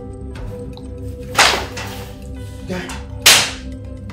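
Two sharp blows in a scuffle, the first about a second and a half in and the second near the end, each a loud sudden crack that dies away quickly, over steady background music.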